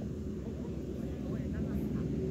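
A low, steady rumble, with a steady hum joining it about halfway through, and a brief faint voice near the middle.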